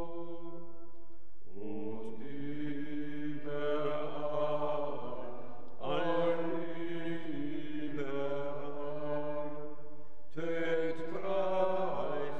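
A congregation singing a slow hymn in church, in long sustained phrases with brief breaks about every four to five seconds.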